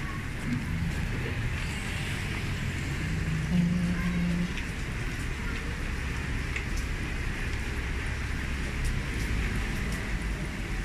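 City street traffic on wet roads: a steady low rumble of engines with the hiss of tyres on wet tarmac. A short steady hum, the loudest sound, comes about three to four and a half seconds in.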